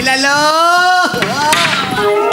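A person's drawn-out vocal cry on one vowel, held for about a second with the pitch rising slightly, then a shorter cry that dips and rises again.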